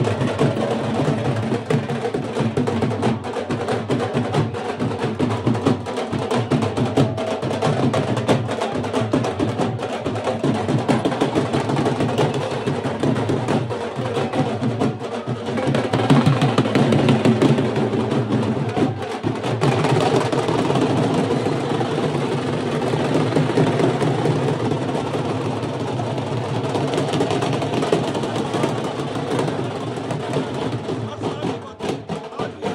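Several dhol drums played together with sticks, a dense and steady fast beat.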